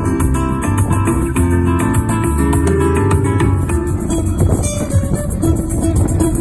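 Flamenco guitar music played on a nylon-string acoustic guitar, with held low bass notes under the melody; about four seconds in it changes to a busier run of quickly plucked notes.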